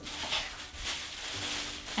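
Thin plastic bag crinkling and rustling as it is handled.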